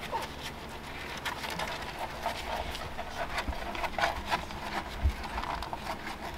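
Litter of three-week-old Boston terrier puppies suckling from their mother, a run of small irregular wet smacking clicks several times a second.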